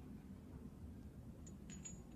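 Faint handling of the harness hardware as webbing is fed through a metal rigging plate, with a few light metallic clinks near the end.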